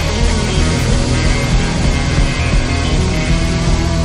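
Live praise band playing loud, steady up-tempo music on drum kit, guitar and keyboard.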